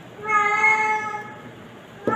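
A single drawn-out animal call, one steady pitched note lasting about a second, starting just after the start.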